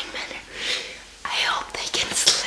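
A young woman whispering in a few short, breathy spurts, with no voiced pitch.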